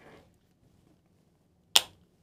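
A single short, sharp click near the end, with quiet room tone around it.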